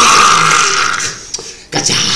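A man's loud mock-monster roar, playing up a scary introduction, lasting about a second, followed by a shorter vocal outburst near the end.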